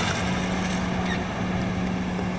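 Subaru Impreza WRC rally car driving past at speed: steady engine and road noise that cuts in and out abruptly with the edit, with a low steady hum under it.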